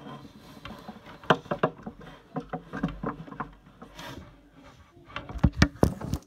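Irregular rustling, clicks and knocks of handling close to the microphone, with a cluster of sharp knocks near the end.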